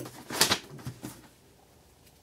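Hands rustling and handling small parts off-camera: a few short scratchy rustles, the loudest about half a second in, that die away to quiet after about a second.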